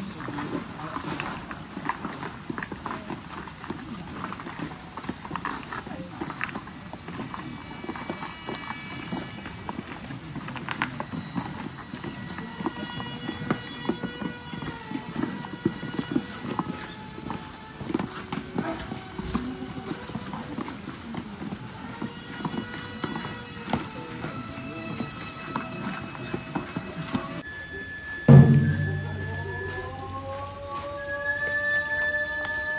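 Many hard footsteps clacking on stone paving as a line of Shinto priests in lacquered wooden shoes walks past, over a low crowd murmur, with short held melodic notes through the middle. Near the end a loud thump sets off a run of rising tones.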